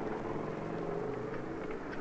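Motor vehicle engine running steadily, a low even hum under faint street noise.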